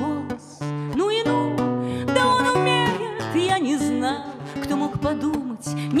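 Nylon-string classical guitar fingerpicked in accompaniment while a woman sings a Russian bard song.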